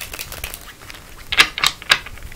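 A tarot deck being riffle-shuffled: a quick patter of cards flicking together at the start, then three louder sharp clicks near the end.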